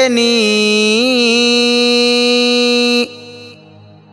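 A Buddhist monk chanting Sinhala seth kavi blessing verses in a single solo voice. He holds the final syllable of a line as one long note, with a slight waver in pitch about a second in, and breaks off about three seconds in. After that only a faint steady background remains.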